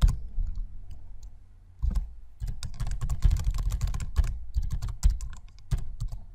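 Computer keyboard typing: a few separate key or mouse clicks in the first two seconds, then a quick, dense run of keystrokes.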